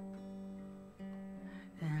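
Acoustic guitar played softly: a chord rings and a second chord is sounded about a second in. A singing voice comes in near the end.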